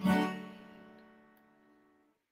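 Acoustic guitar's final strummed chord ringing and fading out over about a second and a half.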